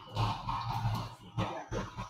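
Indistinct voices of several people talking at a low level in a small room.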